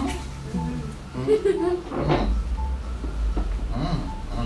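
Indistinct voices in a room of children and adults, with music playing in the background.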